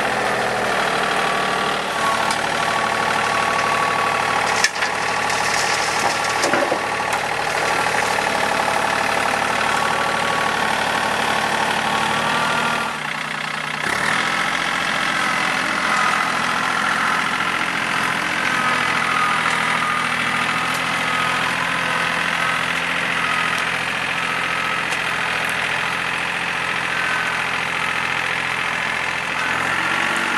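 Diesel engine of a TYM T413 sub-compact tractor running steadily as its loader grapple is worked through the ground. There is a single sharp knock about five seconds in and a brief dip in level around thirteen seconds in.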